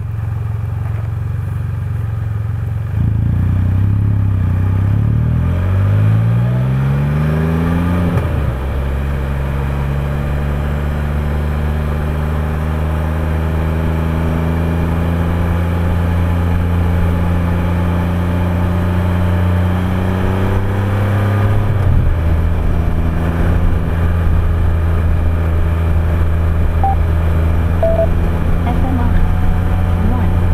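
Can-Am Spyder F3's three-cylinder engine idling, then pulling away with a rising pitch, dropping at an upshift about eight seconds in, climbing slowly through a long steady run, and dropping again at a second upshift a little past twenty seconds before cruising.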